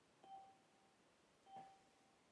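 Two short, faint electronic notification chimes from webinar software, about a second and a quarter apart, each one clear single tone that quickly fades.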